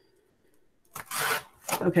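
A short rasping rub, about half a second long, about a second in: hands working Velcro strips on a corrugated plastic board. A voice follows near the end.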